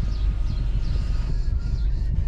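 Steady low rumble of a car idling, heard from inside the cabin, with faint high chirps repeating about twice a second.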